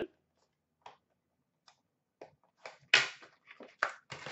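Scattered soft clicks and rustles of a cardboard trading-card box and its packs being handled on a countertop, with a louder brief rustle about three seconds in and another just before the end.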